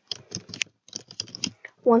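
Typing on a computer keyboard: a quick run of about a dozen key clicks over a second and a half as a password is entered.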